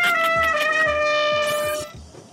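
A trumpet holds one long note that sinks slightly in pitch and stops near the end, closing a comic 'wah-wah' failure sting that mocks a silly answer.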